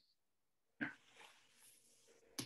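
Near silence on a call line, with a faint steady hum and one brief faint sound about a second in.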